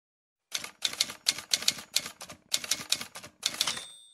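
Typewriter keys clattering in quick runs of strikes, ending in a short bell-like ding near the end.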